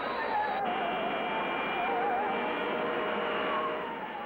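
Sci-fi film soundtrack: a high wavering tone, musical-saw-like, over a steady rushing jet sound of a flying saucer. The wavering stops about halfway and steady held tones carry on.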